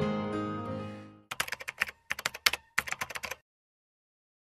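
A song's outro fades out over the first second. Then come about a dozen quick, irregular computer-keyboard typing clicks over two seconds, stopping about three and a half seconds in.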